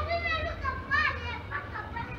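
Children's high-pitched voices calling out, rising and falling, mostly in the first second or so.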